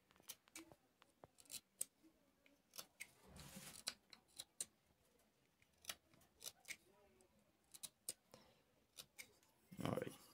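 Small carving knife cutting into the soft emburana wood of a wooden bird call, faint irregular clicks and scrapes as the blade whittles out the call's sound window. A longer scraping stroke comes about three and a half seconds in.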